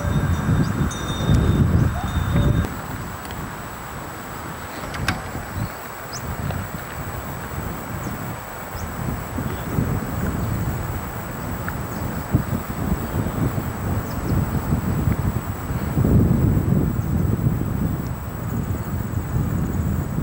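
Wind buffeting an outdoor camera microphone: an uneven low rumbling rush that surges in gusts, stronger about a second in and again near the end, over a thin steady high-pitched whine.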